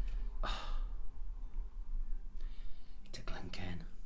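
A man breathing out audibly just after a sip of whiskey, followed by a brief low mumble near the end.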